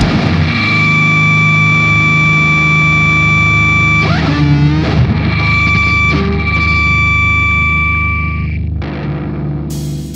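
Slam death metal: a distorted electric guitar holds a sustained ringing note with a steady high tone over it. About four seconds in it breaks off with a bend in pitch, then it rings on and fades out near the end.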